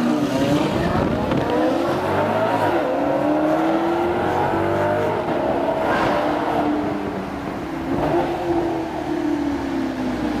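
Maserati GranCabrio MC Stradale's V8 engine heard from inside the car, revving up hard at the start as it accelerates, then pulling steadily with its pitch slowly rising and easing off toward the end. A brief sharp click about six seconds in.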